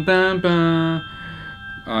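A man's voice singing a few long held notes that step upward in pitch, breaking off about a second in.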